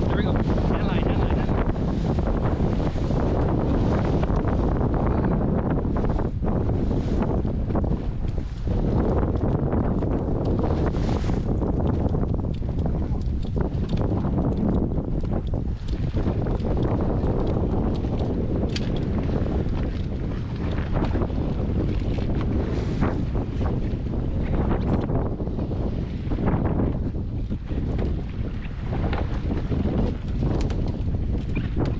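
Steady wind buffeting the microphone on a small fishing boat, with its outboard motor running and choppy sea water washing against the hull.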